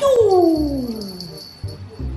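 A puppy's single long whining cry, starting loud and sliding steadily down in pitch over about a second and a half, with music in the background.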